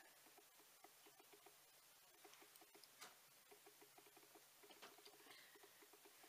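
Near silence: room tone with faint, rapid soft clicking in uneven clusters of several clicks a second.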